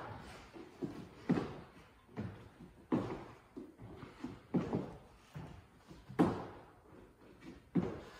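Feet thudding on a wooden floor during jumping lunges: a run of short landings about once a second, every other one louder.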